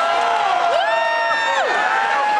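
Concert crowd cheering and whooping, many voices rising and falling together, with one long high held whoop near the middle.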